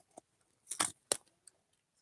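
Hands opening the packaging of a cardboard box: a few short, sharp crackles, about four in two seconds, with quiet between.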